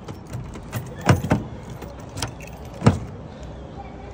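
A few sharp clicks and knocks: a pair about a second in and the loudest near three seconds, from a car's door handle and latch being worked as the door is opened.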